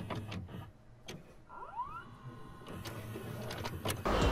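Videocassette player mechanism starting playback: a few clicks and clunks, then a whirring tone rising in pitch about one and a half seconds in, with more clicks near the end.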